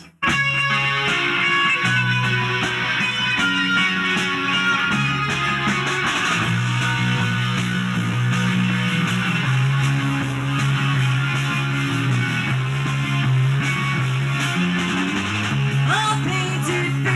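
Live rock band playing an instrumental intro on electric guitar, bass guitar and drums, starting suddenly right at the beginning and running on steadily with a moving bass line under the guitar.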